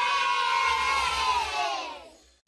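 A group of children cheering, their held voices bending down in pitch and fading out near the end.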